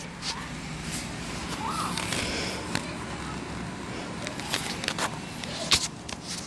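Outdoor residential street ambience with faint distant voices, broken by several short, sharp clicks, the loudest near the end.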